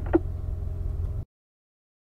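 Chevrolet Corvette Stingray's V8 idling in park, a steady low hum, which cuts off abruptly just over a second in, leaving silence.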